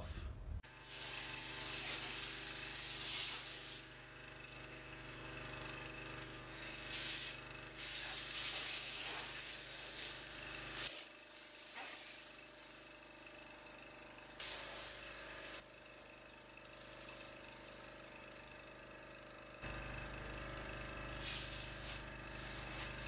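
Pressure washer running: a steady pump hum with the hiss of the water spray on a car being snow-foamed and rinsed. The level jumps abruptly a few times.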